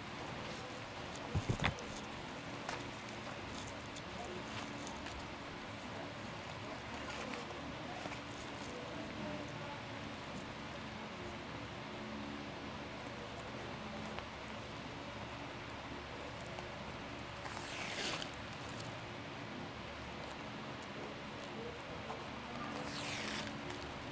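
Quiet hand-sewing: thread drawn through fabric with a needle, heard as two short swishes a few seconds apart near the end, over a faint steady hum. A brief knock about a second and a half in.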